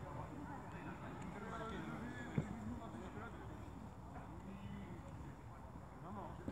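Faint, distant voices talking, with one sharp knock about two and a half seconds in.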